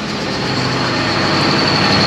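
Steady machine running noise with a faint high whine and a low hum, slowly growing louder.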